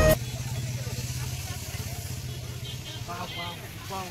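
Outdoor market street background: a steady low rumble, with voices of people close by briefly about three seconds in.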